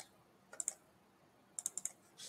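Faint clicking at a computer: two short clicks about half a second in, then a quick run of about five clicks near the end.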